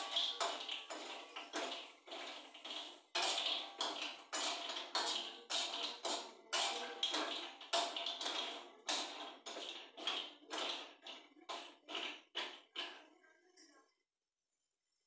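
Spatula scraping and tapping against a frying pan as food is stirred and turned, in quick strokes about two a second that grow weaker near the end.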